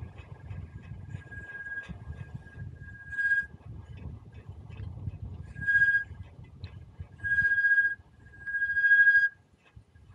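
Bicycle brakes squealing in repeated short, high squeals as the bike slows, each lasting half a second to nearly a second, the longer ones toward the end. A low rumble of wind and tyres runs underneath.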